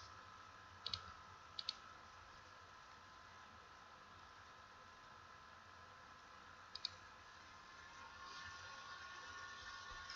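Computer mouse button clicking: three quick pairs of sharp clicks, about one second in, just after, and near seven seconds, over faint room tone with a steady high whine.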